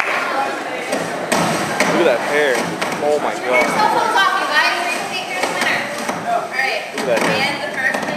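Many voices talking over one another in a large hall, with a few sharp knocks.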